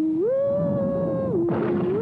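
Eerie horror-film soundtrack: a single sustained, wavering tone that slides up to a higher held pitch and back down, over a low rumble, with a brief rush of hiss near the end.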